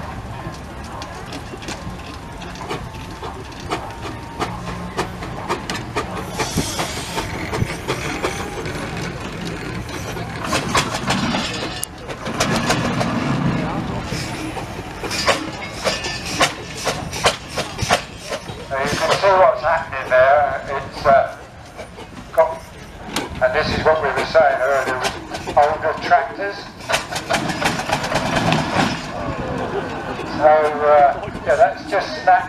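Steam traction engine working hard under a heavy pulling load, its exhaust beating in a string of sharp chuffs, with people talking nearby.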